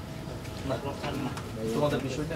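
Faint voice sounds over a low steady background: a short voiced utterance about two-thirds of a second in and another near the end.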